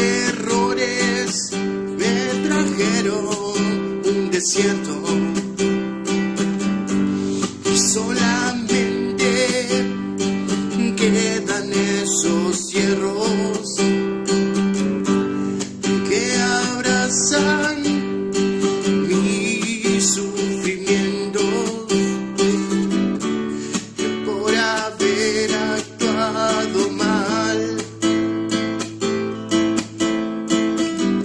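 A man singing to his own strummed acoustic guitar accompaniment, with steady chords and a wavering sung melody over them.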